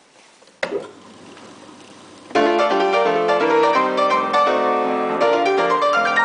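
A 1928 Chickering & Sons Ampico player piano being started: a sharp click about half a second in as the mechanism is set going, a faint steady hum, then a little over two seconds in the piano begins playing a foxtrot from a perforated paper roll, full chords in a brisk, regular rhythm.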